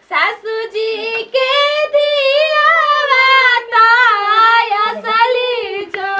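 A high-pitched voice singing without accompaniment, in long wavering held notes broken by short pauses between phrases, in the manner of a wedding folk song sung during the welcoming ritual.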